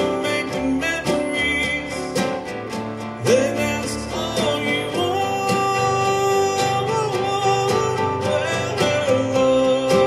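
Male voice singing a slow song with a long held note in the middle, over a strummed nylon-string classical guitar.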